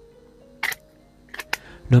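Fixed-blade knife's Kydex sheath clicking as the blade is worked in and out of its snap retention: one sharp click about a third of the way in, then two more close together near the end, over faint background music.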